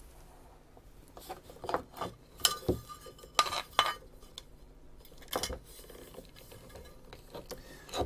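A small metal electronics enclosure being opened by hand: a handful of scattered light metallic clinks and scrapes as the lid comes off, the clearest a little after two seconds in and around three and a half seconds in.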